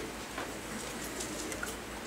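Quiet classroom room tone: a steady low hiss with a couple of faint soft clicks.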